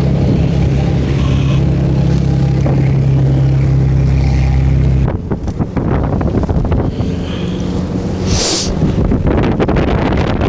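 Motorboat engine droning steadily, which breaks off suddenly about halfway through. After that, wind buffets the microphone over choppy water, with a short hiss near the end.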